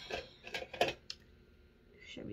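A few light clicks and taps of makeup items being handled, four or five in the first second, then quiet.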